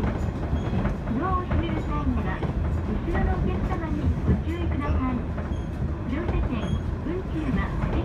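Inside a JR East KiHa 110 series diesel railcar on the move: a steady low rumble from the running gear and engine, with a few clicks from the wheels over the rails. People's voices carry on over it.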